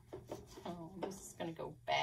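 A woman speaking softly, with a few light clicks near the start.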